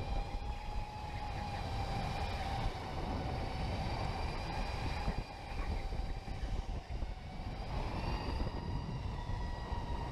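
Electric go-kart motor whining steadily as the kart is driven at speed, its pitch slowly rising in the last few seconds, over a low rumble from the kart.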